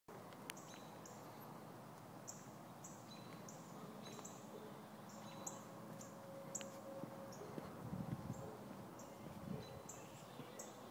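A small bird chirping over and over, short high notes about twice a second, faint against a quiet outdoor background. There is a brief low rustling about eight seconds in.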